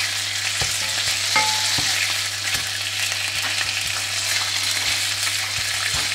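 Bacon rashers sizzling as they fry in hot oil in a nonstick frying pan, with a wooden spatula now and then tapping and scraping the pan in short clicks. A steady low hum runs underneath.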